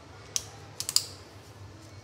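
A few light, sharp clicks from small objects being handled: one just under half a second in, then a quick cluster of three or four about a second in.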